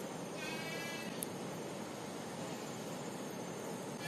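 A brief pitched animal cry lasting about half a second, shortly after the start, over steady outdoor background hiss, followed by a single sharp click.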